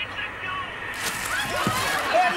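Liquid splashing against a pane of glass: a sudden splash about a second in that lasts about a second.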